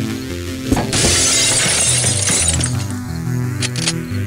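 Glass shattering as a cartoon sound effect over background music: a sharp hit just under a second in, then about two seconds of crashing and breaking.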